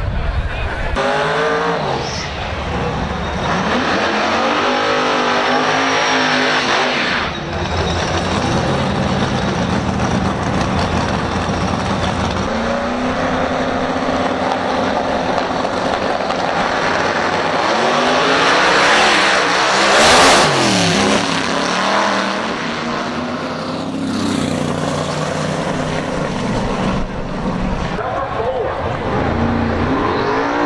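Small-tire drag race cars' engines revving hard, the pitch sweeping up and down again and again. The loudest moment is a sharp rise about two-thirds of the way through.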